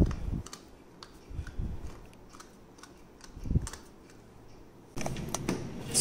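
Glass pump oil sprayer misting cooking oil over french fries in an air fryer basket: a few short sprays with small clicks and soft handling thumps, roughly every second and a half.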